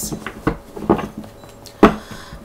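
Tarot card decks being handled on a table: a few short taps and knocks, with one much louder knock near the end.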